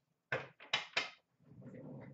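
Trading cards being handled and set down: three quick slaps in the first second, then a softer shuffling rustle.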